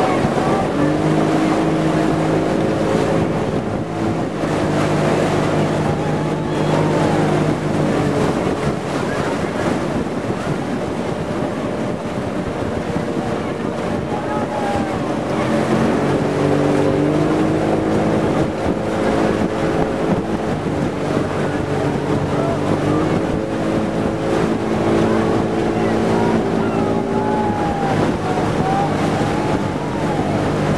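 Outboard motor of a small launch running steadily at cruising speed, its drone stepping to a new pitch a few times as the throttle changes, with wind buffeting the microphone and water rushing past the hull.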